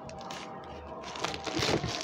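Plastic packing tape and a cardboard box rustling and crinkling as they are handled. The rustling is louder from a little over a second in.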